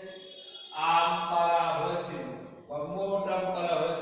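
A man's voice speaking in a drawn-out, sing-song way, in two long held phrases after a quieter first second, like a teacher reading numbers aloud in class.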